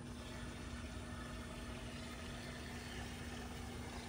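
Pool filter pump motor running with a steady electric hum, over an even wash of moving water.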